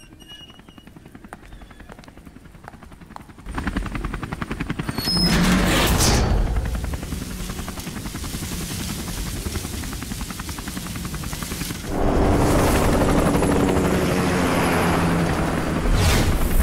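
A fast, even fluttering pulse over a low rumble, machine-like, as if from a rotor or an engine. It jumps louder about three and a half seconds in, swells with a rushing sweep near six seconds, and grows louder again about twelve seconds in.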